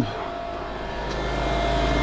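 Freeze dryer's oil-less vacuum pump running with a steady hum, growing gradually louder.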